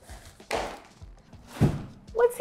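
Cardboard flaps of a large TV shipping box being pulled open: a sudden scraping rustle about half a second in, then a dull thump near the end.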